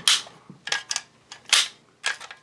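A handful of sharp metallic clicks and snaps from the magazine release of a BUL Armory SAS II Ultralight double-stack 1911 pistol being pressed and the magazine being worked out of the grip. The magazine releases but only ejects a little on its own.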